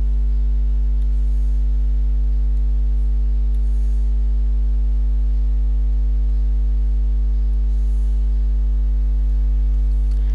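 Steady electrical hum, loud and low, with a ladder of evenly spaced overtones, unchanging throughout.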